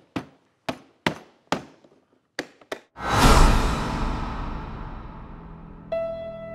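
About seven sharp knocks in quick, uneven succession as a briefcase's lock is struck to break it open. About three seconds in, a deep dramatic boom swells up and slowly fades, a film-score hit.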